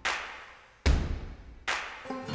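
Three sharp, reverberating hits about 0.8 s apart, each reaching deep bass and dying away before the next.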